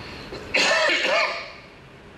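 A man clearing his throat into a podium microphone, once, for just under a second.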